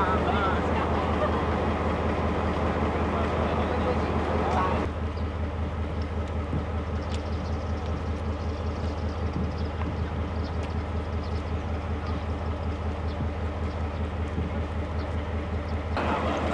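Diesel-electric locomotive R101 idling: a steady low engine hum with an even throb. Indistinct crowd chatter over it for the first few seconds.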